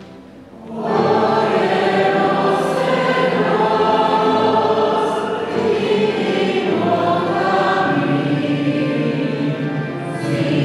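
Choir singing in a church, coming in loudly about a second in after a brief lull and carrying on steadily.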